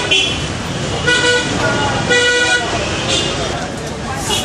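Busy street traffic with vehicle horns honking: two short blasts about a second and two seconds in, over a steady din of traffic and voices.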